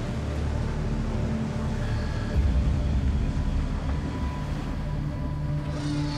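A steady low rumble from a fishing boat at sea, swelling louder about two and a half seconds in, under a music bed of held tones.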